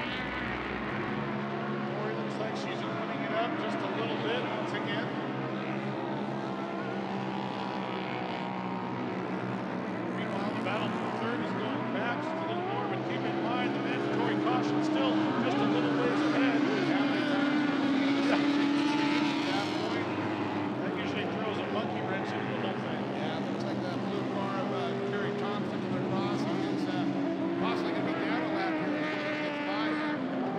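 Engines of several racing UTVs on a dirt track, revving up and down in pitch as they accelerate and back off. It grows loudest around halfway through, when one machine runs close by.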